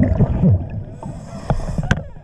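A diver's scuba regulator heard underwater: exhaled air bubbles gurgling in low sweeping pulses, then a faint hiss of inhalation, with a couple of sharp clicks near the end.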